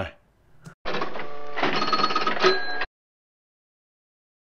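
A short electronic outro sting of steady held tones, with higher notes joining partway through, lasting about two seconds and cutting off suddenly.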